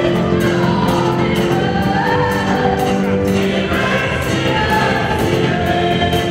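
Church choir singing with instrumental accompaniment and a steady beat.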